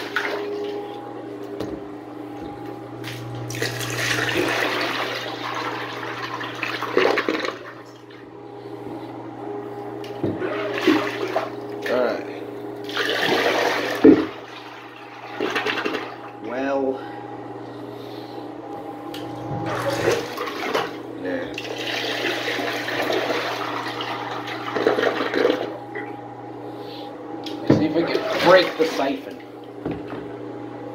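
Water poured into a miniature toilet's bowl to bucket-flush it, splashing and rushing down the drain in several separate bursts. A steady hum runs underneath.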